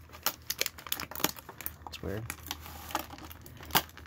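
Stiff plastic of a toy's blister-pack tray crinkling and clicking as a pocket-knife blade works at it to free the accessories, in a string of short sharp clicks with one louder snap near the end.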